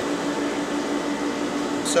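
Water-treatment plant machinery humming steadily: a constant mechanical drone over an even hiss, from the motors and equipment working the runoff treatment tank.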